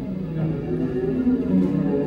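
Live band playing instrumental music: sustained electric guitar notes over drums.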